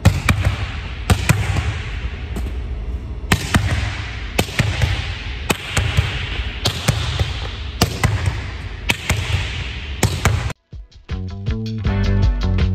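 A volleyball struck one-armed into a gym wall over and over, sharp smacks of hand and ball on the wall about once a second, echoing in a large gym. Near the end the smacks stop and music starts.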